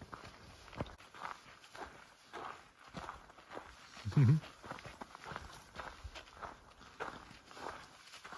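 Footsteps of hikers walking at a steady pace on a dry dirt trail, a step about every half second. About four seconds in, a short "mm-hmm" from a voice is the loudest sound.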